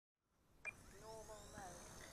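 Blade Nano S2 micro helicopter's small electric motor spooling up, a faint whine rising in pitch and then holding steady. There is a sharp click a little over half a second in.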